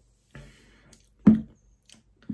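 Mouth and breath sounds of a man tasting a beer: a breathy exhale with a low hum, then a short, sudden voiced sound like a throat-clearing "hm" about a second and a quarter in, and a faint wet click near the end.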